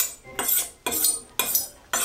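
A kitchen knife drawn along a sharpening steel in quick, even strokes on alternating sides, about two a second, each a bright metallic scrape with a short ring.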